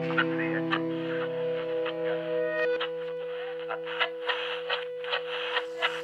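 A song's final chord ringing out on an effected, distorted guitar: the lower notes die away about two seconds in while two higher tones keep sounding. Short clicks are scattered over it.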